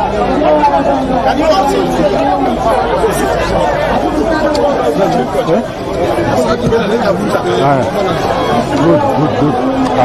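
Several people talking over one another: overlapping conversational chatter with no single voice standing out.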